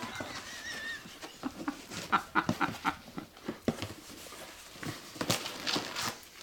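Rustling, scraping and small irregular knocks of a cardboard gift box and its ribbon being handled and untied, with a brief faint high-pitched whine near the start.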